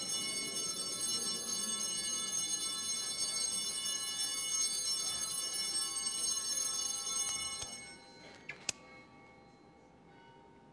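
Altar bells rung continuously for about seven and a half seconds as the chalice is elevated at the consecration, with a steady high jingling ring that stops near the end. A single sharp clink follows about a second later.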